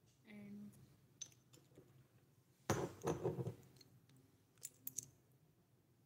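Small dishes and utensils being handled: a few light clicks and clinks, with a louder clatter about three seconds in.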